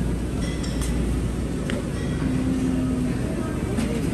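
Shopping cart rolling across a store floor, a steady low rumble, under general supermarket background noise with faint music and voices and a few light clinks.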